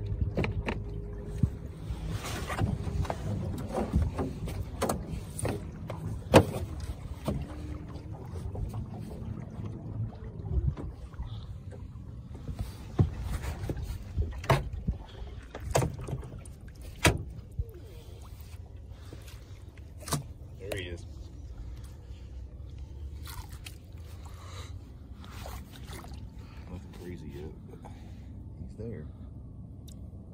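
Small aluminum boat running low on its outboard motor, with scattered sharp knocks and clunks against the hull and water splashing as a jugline float is lifted out of the lake and its line hauled in.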